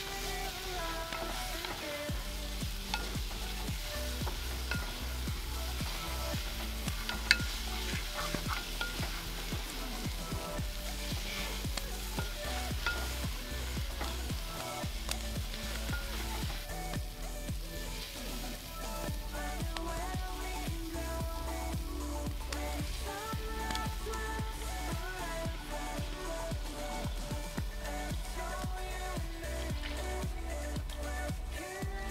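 Beef sizzling and frying in a cast-iron pot as it is stirred and scraped with a wooden spoon, mixed with background music that has a steady bass line. There is a single sharp click about seven seconds in.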